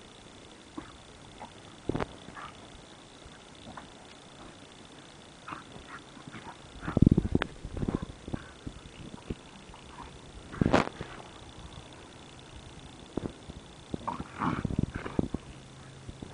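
A German Shepherd and a young Staffordshire Bull Terrier play-fighting face to face, making scattered short dog noises. The loudest bursts come about seven and eleven seconds in, and there are more near the end.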